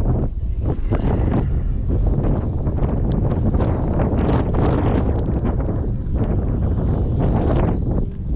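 Wind buffeting a GoPro action camera's microphone: a continuous low rumble that rises and falls unevenly.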